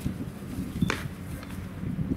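Ballpark ambience between pitches: a low background murmur with a steady hum, and one sharp click about a second in.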